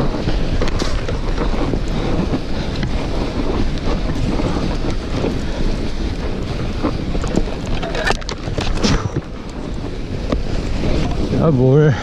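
Wind rushing over the camera microphone and tyres rolling through snow as a mountain bike is ridden along a snowy trail, with a few brief knocks from the bike about eight to nine seconds in.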